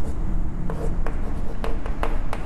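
Chalk writing on a chalkboard: a series of short taps and scratches as letters are written.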